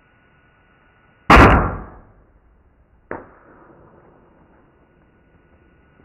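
A bow shot at close range: one loud, sudden snap of the string and arrow, dying away over about half a second. A second, fainter sharp click follows about two seconds later.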